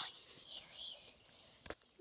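Faint whispering, breathy and without a clear voice, with a single sharp click near the end.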